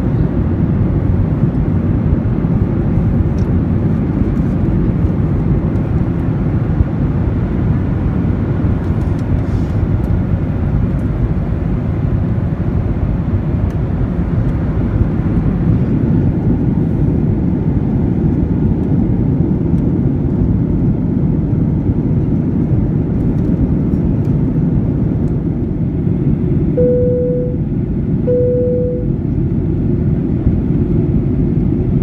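Steady cabin noise of a jet airliner in flight: engine and airflow noise, heaviest in the low end. Near the end, two short chime tones at the same pitch sound about a second and a half apart from the cabin signal system.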